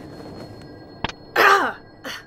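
A single click about a second in, then a short voiced cry from a voice actor, falling in pitch.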